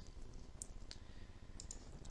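A few faint, sharp computer mouse clicks over low room noise.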